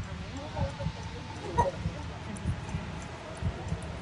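Faint, indistinct talking over irregular low rumbling thumps of street noise, with one short sharp sound about one and a half seconds in.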